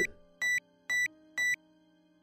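Electronic acupuncture pen (Acupen V5) beeping: three identical short high-pitched beeps, about two a second, over faint sustained background music tones.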